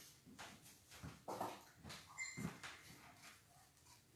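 Faint scraping and light knocking of a wax bar and craft materials being handled on a tabletop, a string of short soft strokes with a brief high squeak about two seconds in.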